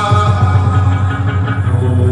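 Hát văn (chầu văn) ritual music, amplified: a đàn nguyệt moon lute over a steady low bass, with a male singer's voice in the first part.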